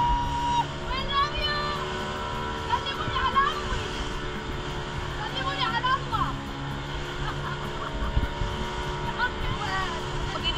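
Outboard motor running steadily with water rushing past, while people's voices call out several times over it.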